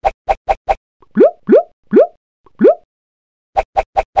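Cartoon-style pop and bloop sound effects for an animated logo. Four quick short pops come first, then four bloops that each rise sharply in pitch, then two more quick pops near the end.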